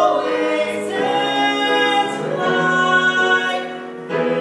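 A man and a woman singing a musical-theatre duet with piano accompaniment, holding long notes that change pitch a couple of times; the sound dips briefly near the end before the next phrase.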